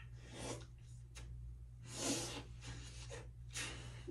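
A cotton towel rubbing over a face in a few soft, faint swishes, the loudest about halfway through, as cleanser and makeup are wiped off.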